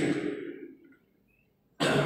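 A man's lecturing voice trailing off into a near-silent pause, then starting again abruptly with a sharp, breathy onset near the end.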